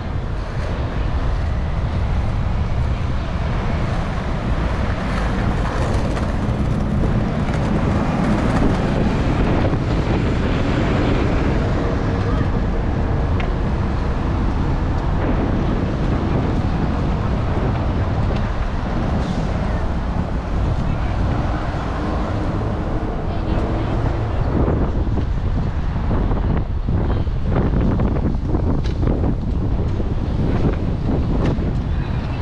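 City street traffic at an intersection, cars passing, under a steady low rumble of wind buffeting the microphone.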